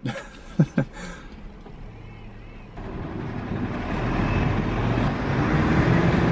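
A short laugh at the start, then from about halfway road traffic on a busy street: cars driving past, the noise swelling steadily louder toward the end.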